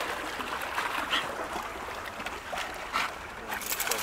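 Choppy water lapping and splashing against shoreline rocks as an Alaskan Malamute paddles and wades toward them, with a few brief splashes.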